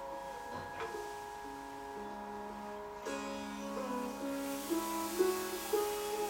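Sitar playing a slow melody of held notes joined by long sliding bends, over a steady ringing drone; a few separate plucks near the start, then a fuller sustained passage from about three seconds in.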